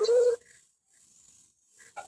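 A person's brief held vocal sound, a drawn-out "aa" heard over Zoom call audio, which stops about half a second in, leaving near silence with a faint short blip near the end.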